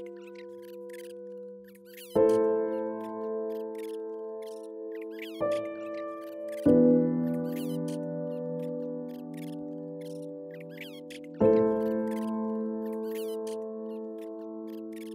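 Slow, calm piano music: sustained chords struck four times, a few seconds apart, each ringing on and fading. Short, high, rapid chirps of a nature-sound birdsong layer run throughout over the music.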